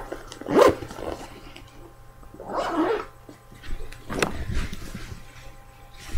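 A dog barking a few times, in short separate barks.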